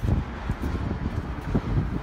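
Wind buffeting the microphone, a rough low rumble with irregular low thumps, one of them right at the start.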